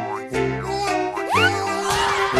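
Light, playful background music with held notes, and a quick upward-sliding cartoon sound effect a little past a second in.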